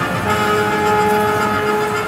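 Game audio from a Grand Cross Chronicle medal pusher machine: a steady electronic chord held for most of two seconds while the jackpot wheel spins, over dense arcade noise.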